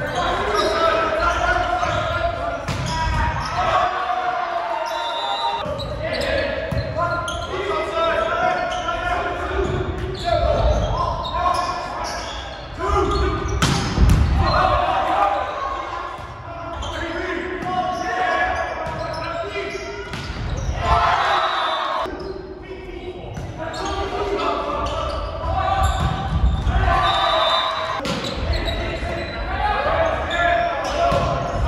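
Players and spectators calling and shouting in a large gymnasium during a volleyball rally, with the sharp knocks of the ball being hit scattered through.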